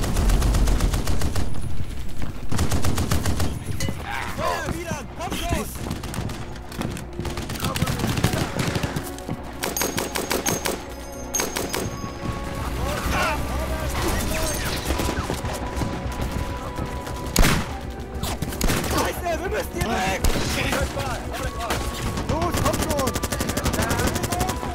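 Battle sound effects: rapid machine-gun fire in long bursts mixed with rifle shots, with short shouts in between and one louder shot about two-thirds of the way through.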